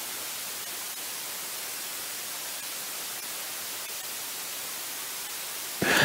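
Steady, even hiss with no other sound in it, like line noise on a broadcast feed; a man's voice starts just at the end.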